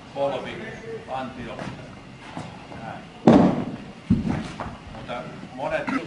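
An iron shot put landing on the hall floor: one loud, echoing thud about three seconds in, then a second thud under a second later.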